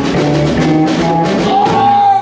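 Live band playing: electric guitars, electric bass, drum kit and congas, with a woman singing and a note held near the end.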